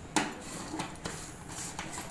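Metal kitchenware clinking: one sharp clink just after the start, then a few fainter taps.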